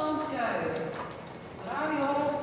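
Hoofbeats of several horses moving over the sand footing of an indoor riding arena, with voices over them.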